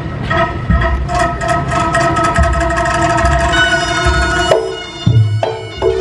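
Reog gamelan accompaniment starting up: a shawm-like slompret holds one long reedy note over busy drum and percussion strokes. About four and a half seconds in the held note breaks off, and heavy drum strokes with short reed phrases follow.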